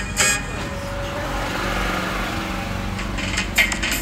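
Music breaks off about half a second in, leaving the steady hum and road noise of a moving car heard from inside the cabin; music comes back in near the end.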